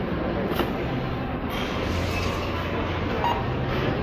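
Steady background noise of a supermarket: a low hum with a faint click or two, no clear single event.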